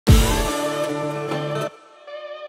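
Intro music: a deep low hit at the start, then held chords that break off shortly before the end.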